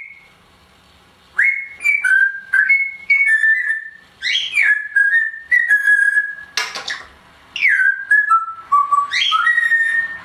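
Timneh African grey parrot whistling: three phrases of short, clear notes that step up and down in pitch, each note starting with a sharp click, the last phrase dropping low and then rising again.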